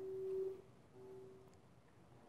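A faint steady tone at a single pitch, which stops about half a second in and comes back briefly about a second in, over quiet room noise.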